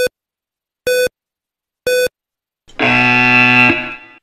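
Yo-Yo intermittent recovery test audio cues: three short electronic beeps a second apart counting down the end of the recovery period, then a longer, fuller electronic tone of about a second that signals the start of the next 20 m shuttle run.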